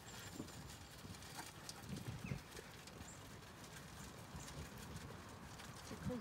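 Zwartbles sheep feeding on rolled barley, heard as faint, irregular crunching with small soft knocks of muzzles and hooves.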